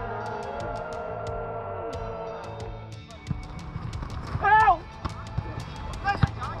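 Men's voices shouting on a floodlit football pitch: one long held call for the first two and a half seconds, then a short shout about four and a half seconds in.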